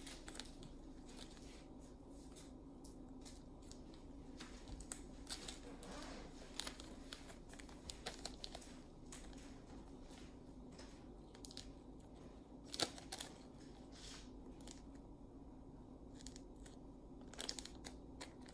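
Thin plastic parachute canopy rustling and crinkling faintly as it is handled and a shroud line is threaded through its reinforced holes, with scattered sharp crackles, the loudest about thirteen seconds in.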